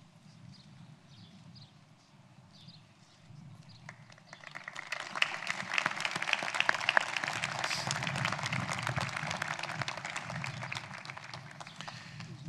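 Crowd applauding: faint and scattered at first, swelling to steady clapping about four seconds in.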